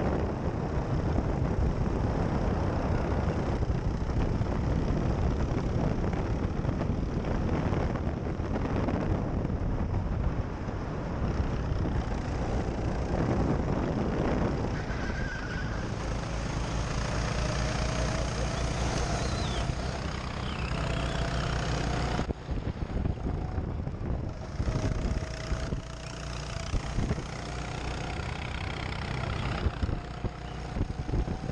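Racing go-kart driving flat out, its motor running continuously with wind rushing over the microphone. In the second half a thin whine rises slowly in pitch, and the sound drops briefly a little past two-thirds through before picking up again.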